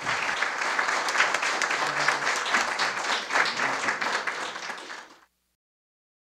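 Audience applauding, a dense patter of many hands clapping, which cuts off suddenly about five seconds in.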